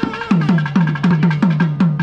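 Procession music played live on a reed wind instrument with drums: a wavering, ornamented melody over steady drum strokes, about four a second, each stroke dropping in pitch.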